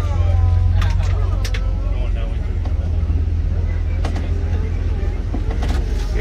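Safari ride truck running with a steady low rumble as it drives along, with a few knocks and rattles from the vehicle. Faint voices are heard in the first couple of seconds.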